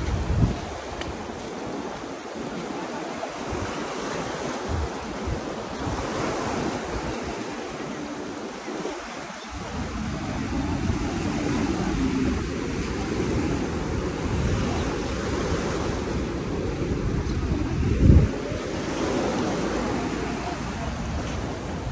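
Small waves breaking and washing up on a sandy shore, a steady hiss of surf, with wind rumbling on the microphone that gets stronger about halfway through and one loud bump near the end.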